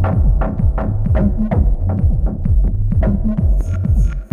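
Techno played live: a steady kick drum with a deep bassline whose notes slide downward in pitch. Bright high ticks come in near the end.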